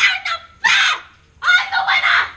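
A child's shrill, squawking cries in three short bursts.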